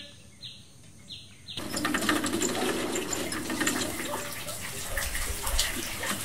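Water splashing and dripping as a metal water pot is hauled up out of a well on a rope. It starts suddenly about a second and a half in, after a couple of faint bird chirps.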